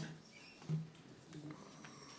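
Faint room noise in a press room waiting to start: a click, low distant murmuring and small scattered rustles and ticks.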